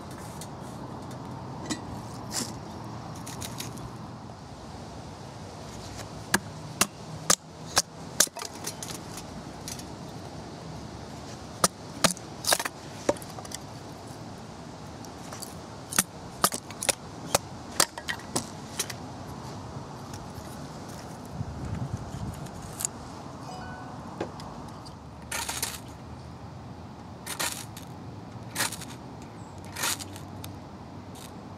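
Batoning kindling: a wooden baton knocking on the spine of a knife driven into a small block of wood. The sharp knocks come in clusters of three to five, with pauses of several seconds between them.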